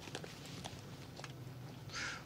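Faint handling sounds: soft rustle and a few small clicks as a small case is slipped into the inside pocket of a leather jacket, over a low steady hum.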